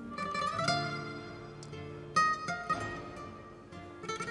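Quiet background music: a slow melody of held notes, with new notes coming in about half a second and two seconds in.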